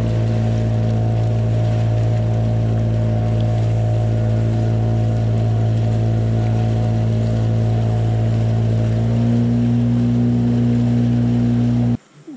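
Boat outboard motor running at a steady cruising speed with the rush of the wake against the hull. The engine note steps up slightly about nine seconds in, then cuts off suddenly at the end.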